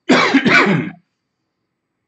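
A man clearing his throat loudly in two quick rasps within the first second.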